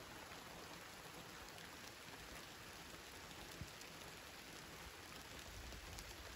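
Faint, steady light summer rain, with occasional small ticks of drops.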